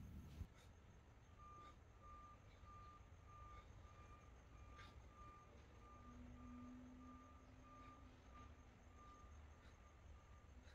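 Near silence with a faint, evenly repeating high electronic beep, nearly three a second, starting about a second in and stopping near the end.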